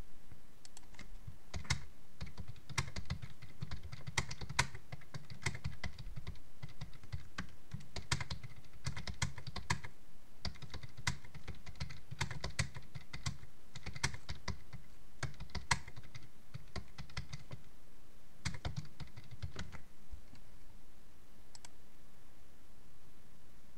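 Typing on a computer keyboard: a long run of quick keystrokes with short pauses, thinning out near the end.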